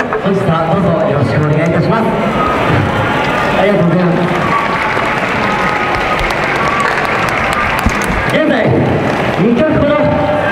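A man's voice over a microphone, then audience applause for several seconds while the performers bow, then the voice again near the end.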